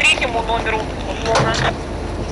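A fire engine runs with a steady low rumble, with short, indistinct voices at the start and again about a second and a half in.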